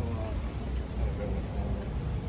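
Low, uneven rumble of street background noise, with a faint voice briefly at the start.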